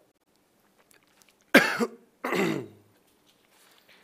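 A man coughing twice in quick succession, the second cough trailing off lower in pitch.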